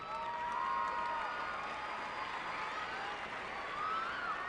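Large arena crowd applauding, with high cheers and whoops rising and falling over the clapping.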